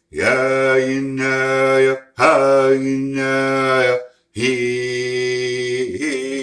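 A man's voice singing unaccompanied vocables ("we he and ah") in a chant-like wolf song. He sings three phrases of about two seconds each on long, steady notes, with a short break for breath between them.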